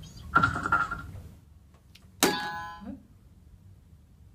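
A toy quiz buzzer sounds its chime about two seconds in as it is pressed. The chime is a sharp attack with several ringing tones that fade within about a second. A short loud sound comes before it in the first second.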